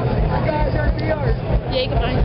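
People talking close to the microphone over crowd chatter, with a heavy, uneven low rumble under the voices. There is a brief high-pitched cry or squeal near the end.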